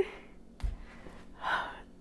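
A woman draws one audible breath about a second and a half in as she struggles to hold back tears. There is a soft thump just before it.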